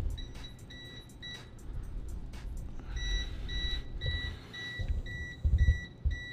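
Digital multimeter's non-contact voltage alarm beeping, a short high beep about three times a second, in runs that come and go as the meter moves along live wiring. Low handling rumble underneath.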